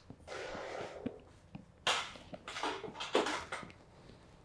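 Handling noise as a light stand carrying an LED panel in a pop-up softbox is moved into place: a soft rustle, then a few short louder rustles and small clicks about two and three seconds in.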